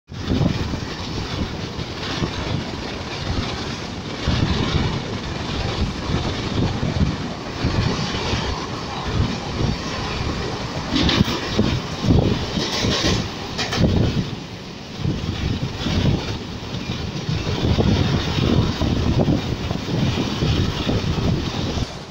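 Mumbai suburban local train running at speed, heard from inside the carriage by an open window: a continuous rumble of wheels on rails that swells and dips.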